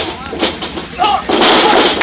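Two pro wrestlers crashing down onto the ring mat together, one loud crash about one and a half seconds in that lasts just over half a second.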